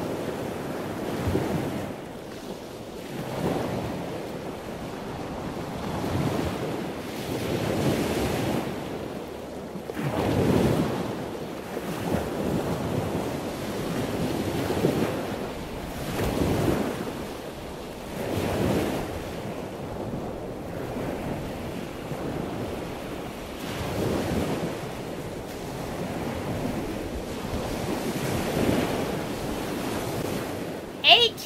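Ocean-wave ambience: a rushing wash of water that swells and falls back about every two seconds.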